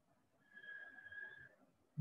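Near silence, broken by a faint, steady high tone that lasts about a second.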